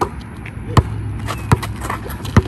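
Basketball bouncing on a concrete court: three sharp bounces about three-quarters of a second apart.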